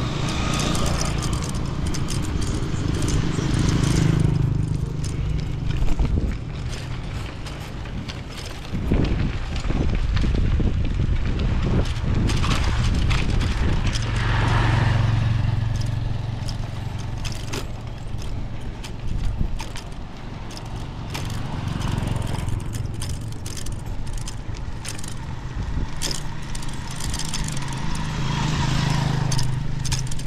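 Ride noise from a bicycle on a rough dirt road: wind rushing over the microphone and tyres rolling on gravel, with scattered clicks and rattles. Small motorcycles' engines swell and fade as they pass now and then.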